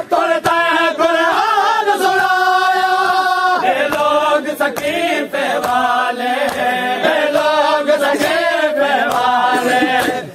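A group of men chanting a Shia noha (mourning lament) in unison, with long held lines. Sharp slaps sound through it at an uneven pace, fitting matam, hands beaten on the chest.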